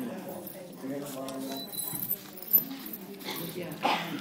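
Indistinct voices talking, with two sharp knocks, the louder about two and a half seconds in and another near the end.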